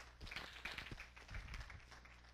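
Faint room sound with scattered light taps and clicks at irregular intervals, over a steady low electrical hum.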